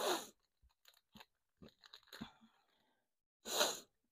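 Die-cut paper ephemera pieces being picked up and handled by hand: faint rustles and light clicks of card and paper, with a louder rustle near the end.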